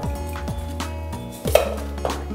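A few sharp knocks of a metal spoon against a steel vessel as soaked rice is scooped out and tipped into a pressure cooker. The loudest knock comes about one and a half seconds in. Background music with held tones and falling notes plays throughout.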